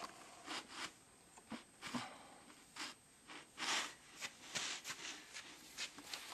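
Irregular short crunching and rustling noises, a few a second, with the longest and loudest about three and a half seconds in.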